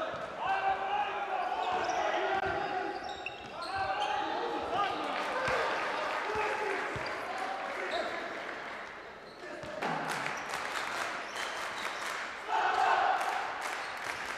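Basketball bouncing on a hardwood court during play, with a quick run of sharp knocks from about ten seconds in.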